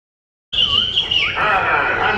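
Sound cuts in abruptly about half a second in after silence: a few high, squeaky chirps that slide in pitch, then people's voices talking.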